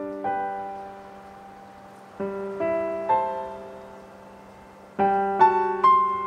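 Piano playing a slow, quiet introduction: chords and single notes struck and left to ring and fade, with fresh groups of notes about two seconds in and again at about five seconds, where the playing grows louder and busier.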